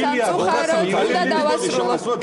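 Only speech: several people talking over one another in Georgian.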